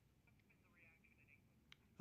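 Near silence, with a faint click near the end.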